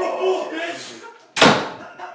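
A man yelling, then a door slamming shut about a second and a half in, the loudest sound.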